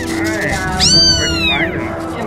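Young kitten meowing: a short cry at the start, then a long, high, arching meow about a second in.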